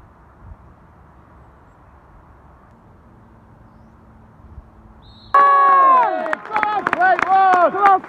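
A crowd's hush during a remembrance silence at a football ground: a faint, muffled ambient murmur. A little over five seconds in, loud close voices suddenly break in, shouting and chanting.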